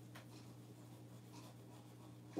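Fingers faintly rubbing the top layer of paper off a Mod Podge photo transfer on a small wooden sign block, peeling away the backing to reveal the transferred print, over a low steady hum.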